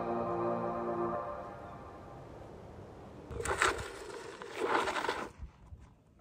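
Calm ambient synth background music that fades out in the first two seconds. It is followed near the end by two short rushes of noise about a second apart.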